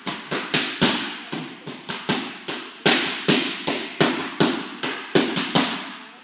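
Punches landing on focus mitts in quick combinations, a string of sharp smacks about three a second, each echoing in the hall.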